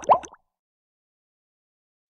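The last two of a quick run of cartoon-style plop sound effects from an animated logo intro. They cut off about a third of a second in, leaving digital silence.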